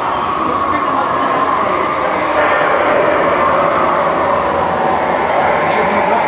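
Steady rushing, rumbling ambience inside a dark boat ride, with voices mixed in; it grows a little louder about two seconds in.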